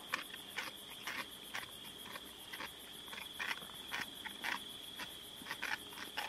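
Night insect chorus: a steady high trill with a faster, pulsing buzz above it, continuous throughout. Through it come short, irregular clicks and cracks, several a second at times.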